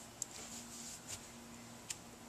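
Two faint sharp clicks about a second and a half apart, with a softer scuff between them, over a steady low hum.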